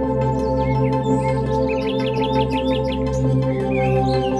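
Slow ambient music of sustained synthesizer chords played on a Korg Wavestate, with recorded birdsong chirping behind it. A quick run of repeated bird chirps comes about two seconds in.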